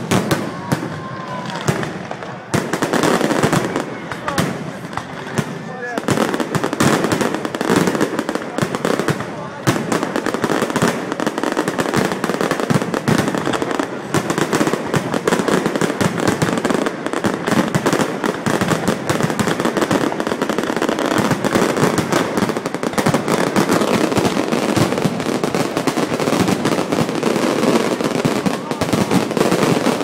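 Fireworks display: aerial shells bursting overhead in rapid, overlapping bangs with hardly a pause.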